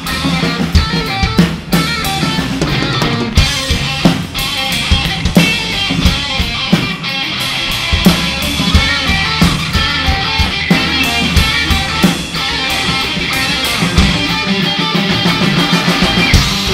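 Live rock band playing an instrumental passage: electric guitars and a drum kit keeping a steady, driving beat, with no singing.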